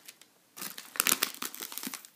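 Candy packaging being handled, crinkling in a quick run of small crackles that starts about half a second in.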